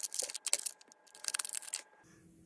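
Thin plastic packaging crinkling and crackling in irregular bursts as hands unwrap a small electronic part, stopping just before the end.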